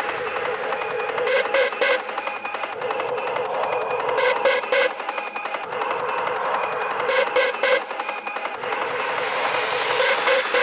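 Hard techno breakdown with the kick drum dropped out: a dense, gritty synth noise texture punctuated by short groups of three stabs about every three seconds. The noise brightens toward the end, building back toward the drop.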